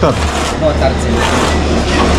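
A steady low rumble, with a short falling voice sound right at the start and brief, faint voices just under a second in.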